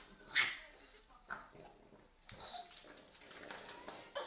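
A baby and a pug playing: a few short vocal sounds from the baby and small noises from the dog, the loudest about half a second in.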